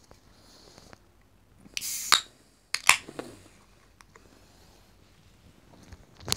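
Beer can being opened: a short hiss of escaping gas about two seconds in, then two sharp clicks a second later.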